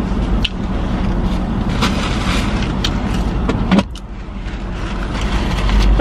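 Steady low hum and rumble of a car cabin, with a few short clicks; the sound drops briefly about four seconds in, then builds again.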